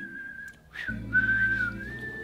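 Whistled melody in a pop song: a clear single-note whistle that holds and steps between a few pitches, over soft backing music, with a short break about half a second in.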